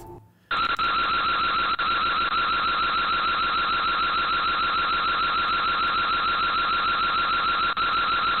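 Electronic alarm siren going off suddenly about half a second in, then sounding loud and unbroken with a fast, even warble.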